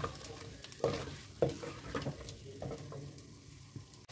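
Raw chicken pieces being stirred with a spoon in a clay handi of hot oil and fried onion paste, sizzling as they sear at the start of the bhunai. A handful of spoon scrapes and knocks against the pot come through, then the stirring quietens toward the end.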